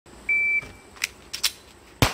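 Shot timer start beep, one short steady high tone, followed by a few light clicks and knocks as the pistol is picked up off the table, and a single loud pistol shot right at the end.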